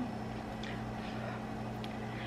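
Quiet kitchen room tone: a steady low hum with a couple of faint clicks.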